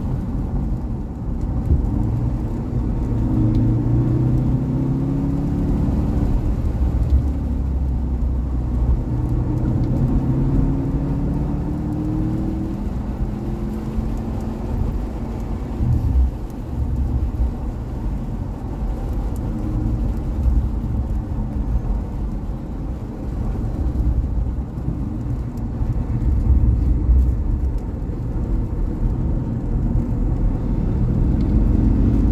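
Porsche sports car's engine heard from inside the cabin during a lap on a wet track, accelerating with the pitch rising twice in the first half, then running more steadily.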